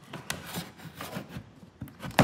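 A flat metal blade scraping and prying in the gap between a plastic body panel and the cart's body: a series of short, irregular scrapes and clicks.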